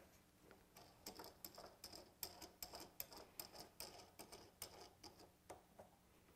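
Faint, irregular metal clicks and ticks, about four a second, as a small steel screw clamp is hooked through the hole in a clamp bar and its screw is turned to tighten it against the bench. The clicks begin about a second in and stop just before the end.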